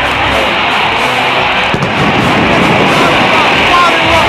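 Loud rock music playing continuously, with electric guitar.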